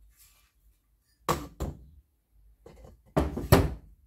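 Knocks and thuds in a workshop: a pair of sharp knocks about a second in, a few softer ones, then a louder pair near the end.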